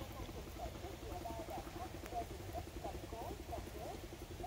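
Faint background of many short chirping calls from small animals, scattered throughout, over a low steady hum.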